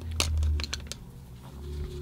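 A scatter of light clicks and taps as a paintbrush and painting gear are picked up and handled, over a low steady hum.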